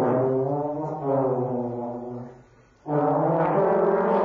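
Trombone playing long, low held notes: the note shifts about a second in, breaks off briefly at around two and a half seconds, and a new held note begins just before the end.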